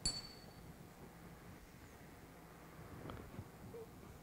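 A single light metallic clink as two hardened steel gauge blocks touch while being wrung together, with a short high ring. It is followed by faint handling ticks.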